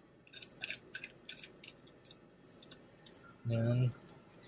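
A series of light clicks and rustles from handling something close to the microphone, about a dozen spread over three seconds, followed by a short spoken word near the end.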